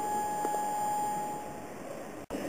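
A single thin, steady high tone held from the concert stage, fading away about a second and a half in, in a quiet pause between louder passages of a contemporary ensemble piece.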